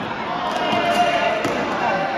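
Players calling and shouting in an echoing indoor sports hall, one call held for about half a second, with a couple of sharp knocks of the cricket ball bouncing on the hard court floor.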